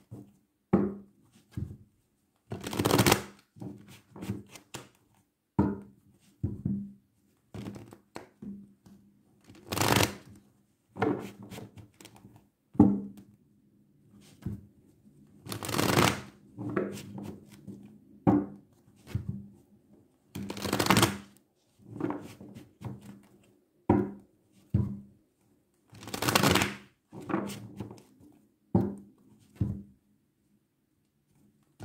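A deck of tarot cards being shuffled by hand: short bursts every second or two, with louder, longer shuffles about every five seconds.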